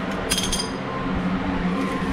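A single metallic clink with a short high ring about a third of a second in, from a small steel tool or screw being handled at a car's front brake hub.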